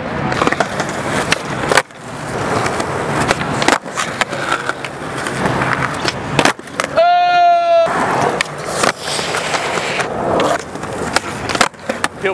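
Skateboard wheels rolling on a concrete skatepark surface, with a few sharp clacks as the tail is popped and the board lands on flat ground during flip tricks.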